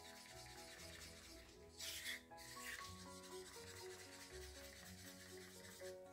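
Faint background music with slow, stepping notes. A wooden stir stick scrapes softly in a cup of acrylic paint, most clearly about two seconds in.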